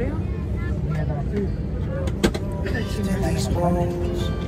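Airliner cabin noise: a steady low rumble from the aircraft's air system, with the murmur of other passengers' voices. A single sharp knock a little past halfway through.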